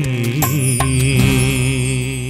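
Malayalam Christian devotional song at its close: one long final note held with vibrato over the accompaniment, with a couple of sharp percussion hits in the first second.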